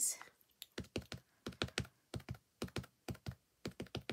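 Plastic ink pad dabbed repeatedly onto a clear stamp on an acrylic block, a run of quick light taps, often in pairs, starting just under a second in.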